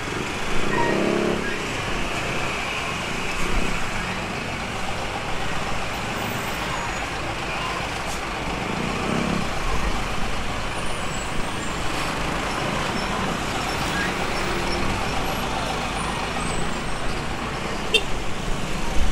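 Steady traffic noise from a slow queue of motorcycles and dump trucks, their engines idling and running at low speed close by.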